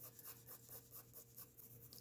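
Faint scratching of a colored pencil on paper in short, repeated strokes, about four a second, laying down a first light layer of color.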